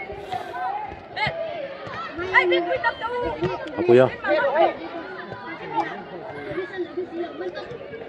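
Several voices talking and calling out over one another: chatter of players and onlookers, with no other sound standing out.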